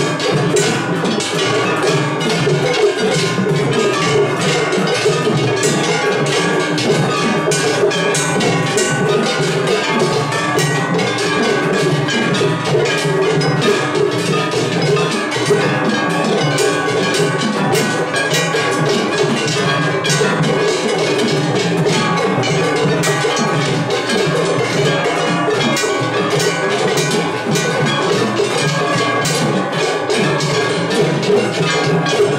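Kumagaya-style festival float hayashi: taiko drums and large hand-held brass kane gongs struck in a dense, unbroken, loud rhythm, with several floats' ensembles playing over one another in a tatakiai drum battle.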